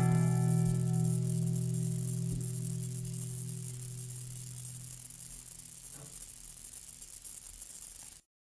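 Final chord strummed on an acoustic guitar, ringing out and slowly fading away as the song ends.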